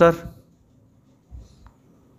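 A man's slow dictating voice finishing a word, then a pause of quiet room tone with one faint low bump about midway.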